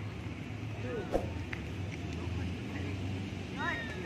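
A single sharp clack of rattan arnis sticks striking about a second in, over a steady low hum, with low voices near the end.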